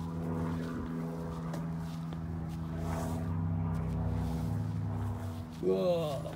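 A small 125cc mini Jeep engine idling steadily. A voice is heard briefly near the end.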